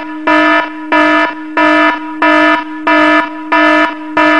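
Electronic alarm buzzer sound effect, a harsh buzzing tone pulsing on and off about three times every two seconds.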